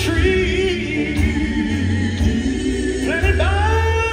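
Live band music: male voices singing over a band of electric guitars, keyboard and drums, with a strong bass low end.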